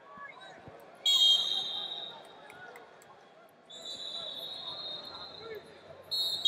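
A referee's whistle blows a loud, shrill blast about a second in, stopping the wrestling, then a second, longer whistle sounds from past the middle to near the end. Arena crowd chatter runs underneath.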